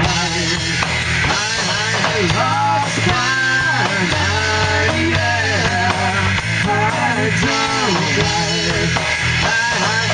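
Rock band playing live: electric guitar, electric bass and drum kit, with sung vocals into microphones.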